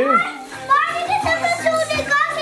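Young children's high-pitched voices chattering and exclaiming, with music playing in the background.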